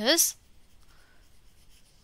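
Faint scratching of a stylus writing words by hand on a tablet.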